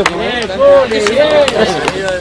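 Close voices of people talking, untranscribed chatter, with a single sharp knock right at the start.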